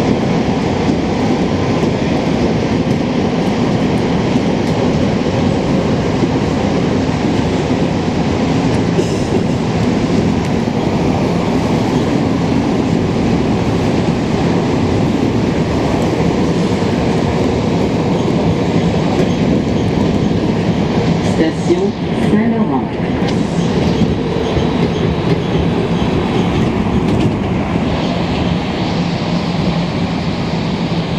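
Interior of a Montreal Metro MR-63 rubber-tyred subway car running through the tunnel: a loud, steady rumble with a motor hum beneath it. A brief squeal comes about two-thirds of the way through, and the car reaches a station near the end.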